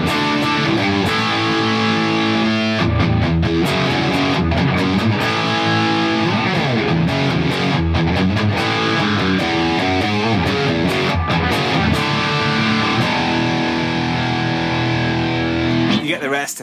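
Distorted electric guitar riffing: chords and single notes from the guitar's Bare Knuckle Nail Bomb humbucker, through a Klon Centaur overdrive set low as a gentle boost into a Marshall JCM800 and a Diezel VH4 on its high-gain channel three. The riff ends on a long held chord.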